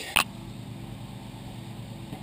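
A couple of sharp knocks from the camera being handled at the very start, then a steady low machine hum holding one pitch.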